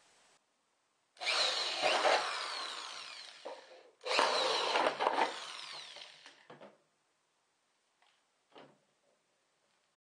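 Corded electric drill with a 3/8-inch bit drilling holes in plastic bottles: two runs of about two and a half seconds each, each fading away with a falling pitch as the drill winds down. Two light knocks follow near the end.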